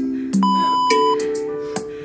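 Background music with a steady beat. About half a second in, a long electronic timer beep sounds for just under a second, marking the end of one work interval and the start of the next.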